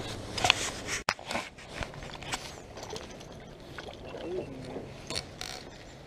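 Scattered light clicks and knocks of fishing tackle and gear being handled in a small jon boat.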